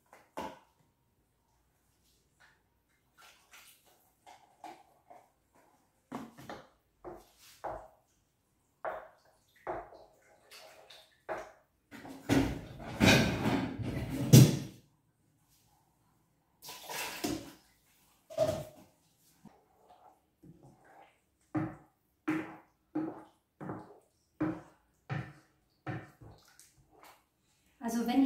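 Kitchen clatter from cooking at the stove: scattered knocks and scrapes of cookware and a wooden spatula on a pan. A longer, louder spell of handling noise comes about halfway through, and near the end there is a quick run of light knocks, about two a second.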